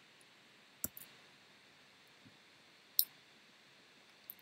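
Clicks of a computer pointing device over quiet room tone: a couple of soft clicks about a second in, and one sharper click near three seconds.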